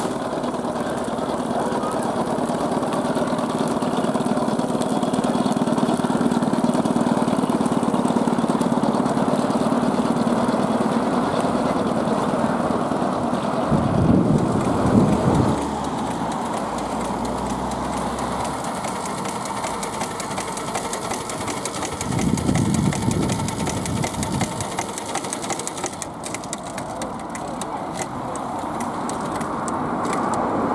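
Miniature steam road vehicles running: a steady mechanical running sound, with two louder low rumbles about 14 and 22 seconds in.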